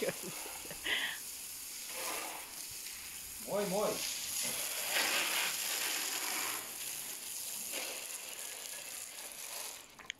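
Water spraying from a garden hose's pistol-grip spray nozzle onto paving stones, a steady hiss.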